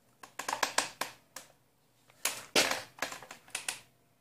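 Clicks and rattles of something being handled close to the microphone, in two quick clusters, the second with a louder scraping rustle.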